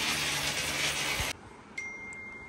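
Steady noise of construction work, which cuts off abruptly about two-thirds of the way through. After it comes a faint, steady high-pitched tone.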